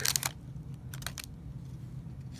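A foil trading-card pack wrapper and a stack of cards being handled as the cards slide out: a few short crinkles and clicks at the start and again about a second in.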